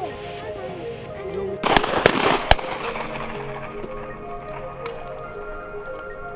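A few sharp shotgun reports within about a second, about two seconds in, the loudest sound here, over background music.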